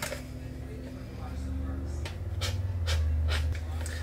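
A few short rustles and clicks, about two to three seconds in, as a plastic drinking straw is handled and pulled from its wrapper, over a low steady hum.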